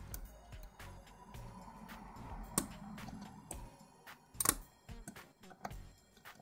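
Steel hook pick clicking and scraping against the pins inside a euro-profile cylinder lock held under tension with a Z-shaped tension tool, in irregular small ticks with louder clicks about two and a half and four and a half seconds in.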